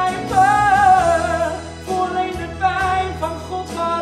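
A young man singing a pop ballad in Dutch, holding long notes with a wavering vibrato over a sustained low instrumental accompaniment.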